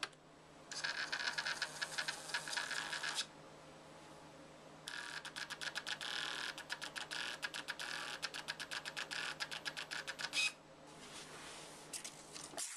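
Small thermal receipt printer printing a test page: its paper feed runs in rapid ticking, first for about two and a half seconds, then after a short pause for about five and a half seconds as the printed paper feeds out.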